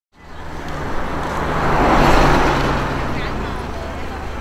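A road vehicle passing by, swelling to its loudest about two seconds in and then fading away, with faint voices behind it.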